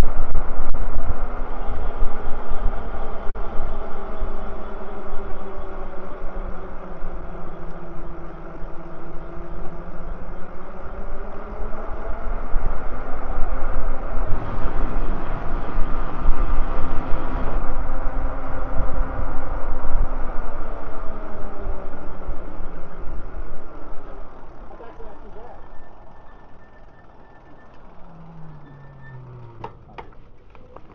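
Electric bikes riding at speed: a whine that rises and falls in pitch with speed, over a heavy rumble of wind on the microphone. The sound dies down near the end as the bikes slow to a stop.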